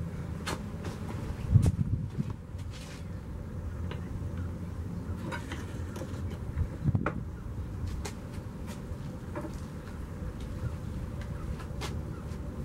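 Scattered light knocks and clicks as a whetstone and a tin can of honing oil are handled and set down on a wooden workbench, over a steady low background hum. The two loudest knocks come about a second and a half in and about seven seconds in.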